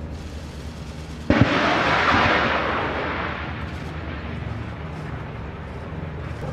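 Tiger attack helicopter firing unguided 70 mm rockets: a sudden loud blast about a second in, then a rushing noise that fades over several seconds. Under it runs the steady low rumble of the hovering helicopters.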